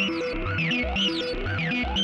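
Studio Electronics Boomstar 4075 analog synthesizer playing through a Strymon BigSky reverb pedal on its Studio program: a repeating pattern of low stepped bass notes, about three to four a second, with high swooping pitch glides above it.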